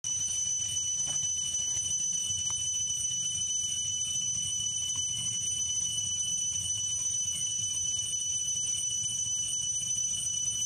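Steady, high-pitched drone of a forest insect chorus, holding one pitch without a break, over a faint low rumble.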